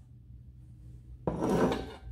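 Brief kitchen handling noise at the chopping board: a single short scrape or knock, about a second in, against a low steady room hum.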